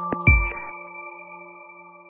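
Electronic logo-intro music: a last hit with a low thump just after the start, then a held chord of bright ping-like tones that fades away.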